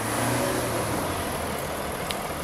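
A motor vehicle running close by: a steady rush with a low hum that swells at the start and then slowly eases.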